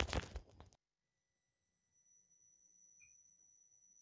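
A short burst of rustling noise on a laptop microphone in the first second, cut off abruptly. It is followed by faint room tone carrying a thin, steady, high-pitched electronic whine.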